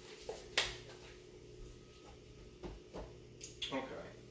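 A few light knocks and clicks, the sharpest about half a second in, over a faint steady hum, with a short spoken "okay" at the very end.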